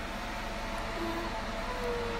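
A steady fan-like hum with a low buzz underneath, holding level throughout, and two faint brief tones about one and two seconds in.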